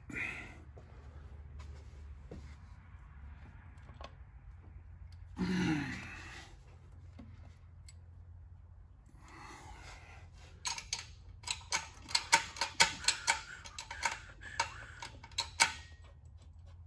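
Irregular run of sharp metallic clicks and taps over the last five seconds or so: a transmission mounting bolt being worked by hand into its hole where the A833 four-speed meets the bell housing.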